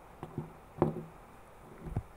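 A few light clicks and taps from handling a screwdriver fitted with a sewing-machine needle over a circuit board. There are four short knocks, the loudest a little under a second in.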